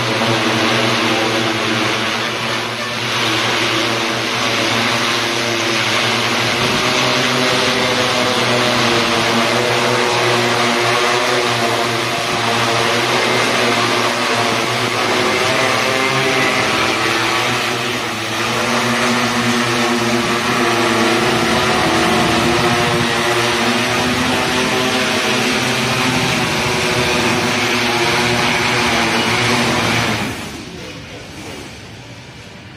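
Agricultural spraying hexacopter drone flying overhead: a steady buzz from its six electric motors and propellers, with several pitches that waver slightly as the motors adjust speed.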